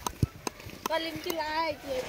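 A knife blade chopping at a piece of wood or bamboo: a few sharp, irregular knocks, with voices in the background.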